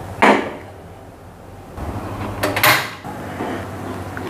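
A wooden spatula stirring a thin batter in a non-stick pan, with two short, sharp knocks of wood against the pan, one just after the start and one a little past halfway.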